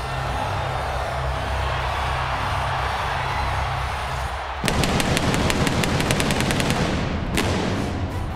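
Arena music with crowd noise, then a rapid string of sharp bangs, about ten a second for some two seconds starting just past halfway, and one more bang near the end.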